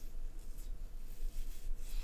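Quiet room with a few soft, brief rustling noises, about half a second in and twice more in the second second.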